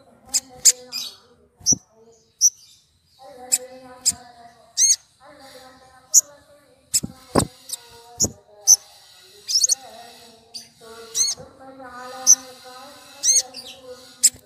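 Sunbird song: sharp high chirps and short hooked whistles repeated many times, mixed with lower, buzzier phrases about a second long and a few sharp clicks.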